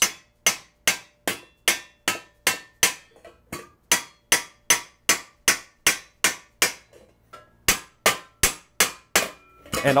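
Raising hammer striking an Argentium silver vase held over a steel stake: an even rhythm of sharp, ringing metal-on-metal blows, about two and a half a second, with one short pause about seven seconds in.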